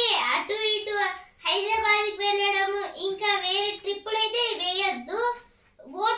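A boy singing in a high, clear voice, holding long steady notes, with a short break about a second and a half in and another just before the end.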